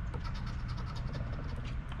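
A coin scratching the coating off a paper scratch-off lottery ticket in quick, short, repeated strokes.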